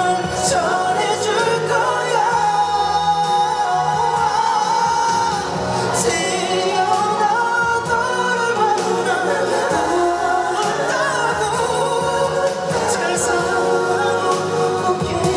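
A male vocalist singing a slow ballad live into a handheld microphone over band accompaniment, amplified through a concert sound system and recorded from the audience.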